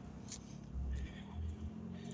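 Faint footsteps ticking every half second or so, over a low uneven rumble from a hand-held phone's microphone being carried while walking.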